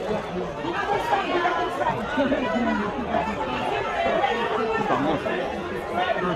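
Chatter of many people talking over each other on a press line, photographers calling out among the voices.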